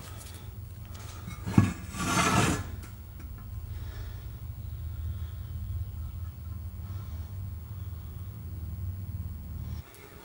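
Steady low hum. About a second and a half in there is a single knock, followed by a short scraping rub as the steel differential cover is handled on a plywood bench.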